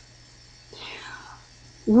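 A pause in a woman's talk, holding a faint, short, breathy sound a little under a second in; her voice starts again just before the end.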